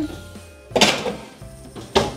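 A metal roasting tin of potatoes going back into a gas oven: one sudden clatter about a second in that fades quickly, then a sharp click near the end, over steady background music.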